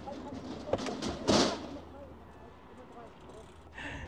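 Kids' mountain bikes setting off from a wooden start platform, with faint voices around them. A short, loud rush of noise comes about a second in.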